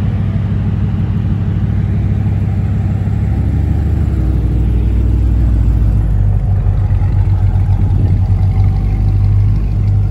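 Chevrolet C8 Corvette's V8 idling with a low, steady rumble that grows a little louder about halfway through and pulses unevenly in the second half.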